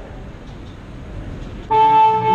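Low murmur of a club crowd between songs, then about three-quarters of the way in a loud, steady held note from the band starts abruptly: one unchanging pitch with overtones.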